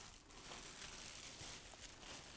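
Faint crinkling of plastic cling film as it is peeled off a rolled-out sheet of cookie dough and gathered up in the hands.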